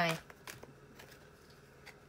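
A tarot deck being shuffled and handled by hand: faint, scattered clicks of cards against one another. A woman's word ends just as it begins.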